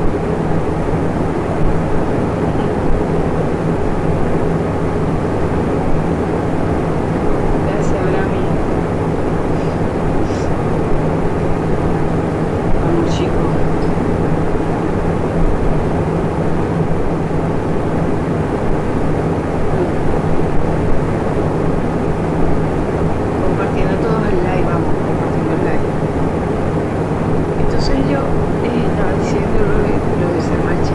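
Steady droning noise with a low hum, with faint, indistinct voice-like sounds toward the end.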